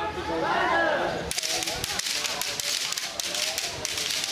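Kendo children's bamboo shinai swords clacking against each other and on armour in a rapid, overlapping flurry of sharp strikes, starting about a second in. Just before the strikes begin there are loud shouts.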